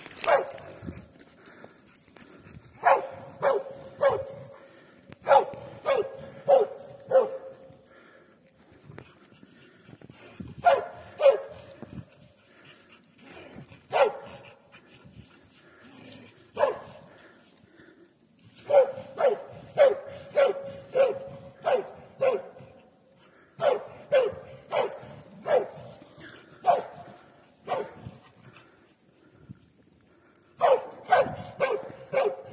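Hunting dog barking in bouts of several quick barks with short pauses between, baying at a wounded wild boar that it holds in the undergrowth.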